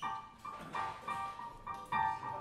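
Electric keyboard playing the introduction to a choir song: a quick melody of short, high single notes, about three or four a second.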